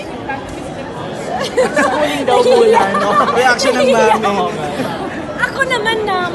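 Speech only: several voices talking over one another in a large, echoing hall, with background chatter.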